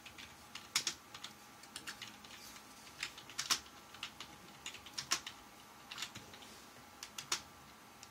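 Typing on a laptop keyboard: quick, irregular key clicks with a few louder taps scattered through.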